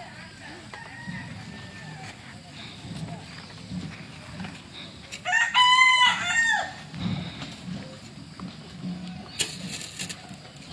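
A rooster crowing once, a single crow of about a second and a half a little past the middle, with a short rising start, a held note and a falling end.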